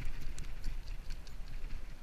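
A wet cast net being pulled in and handled in shallow water: a run of small irregular clicks and splashes over a low rumble.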